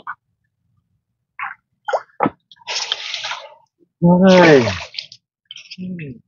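A few short splashes and sloshes of water, then, about four seconds in, the loudest sound: a person's short loud vocal cry that falls in pitch.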